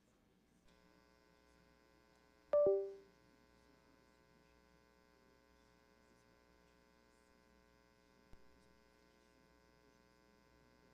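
Steady electrical hum made of many even tones, starting just under a second in. About two and a half seconds in there is a sharp knock that rings briefly, and a faint click comes near the end.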